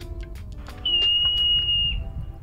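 Hoary marmot whistling: one long, steady, high-pitched call that starts about a second in and dips slightly as it ends.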